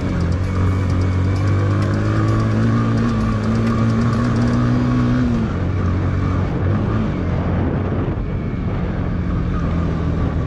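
Yamaha motorcycle engine running under way in third gear, with road and wind noise; its pitch climbs slightly and then drops about five seconds in as the throttle eases.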